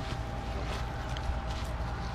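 Quiet outdoor background: a low, fluttering rumble with a faint steady hum held throughout, and no speech.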